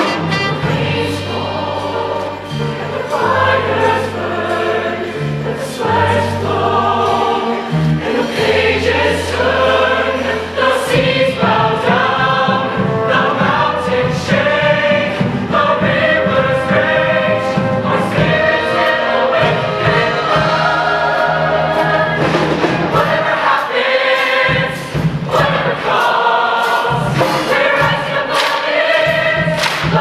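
A large mixed show choir singing in chords with instrumental backing: sustained bass notes under the voices at first, then a steady drum beat from about a third of the way in.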